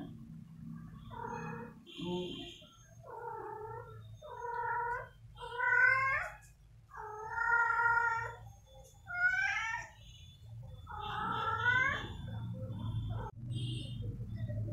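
A domestic cat meowing repeatedly, about seven drawn-out calls, several rising in pitch.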